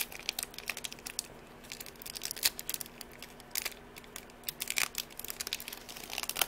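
Foil trading-card booster pack crinkling and tearing as it is opened by hand. A dense run of crackles comes first, then a brief lull and a few sharper single crackles about a second apart.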